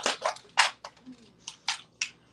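A clear plastic tackle box being handled and opened, giving about half a dozen short plastic clicks and clacks.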